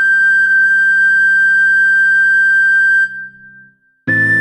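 Recorder holding one long, pure high note for about three seconds over a low sustained backing accompaniment. Both fade out shortly after, leaving a brief near-silent gap before the next phrase starts.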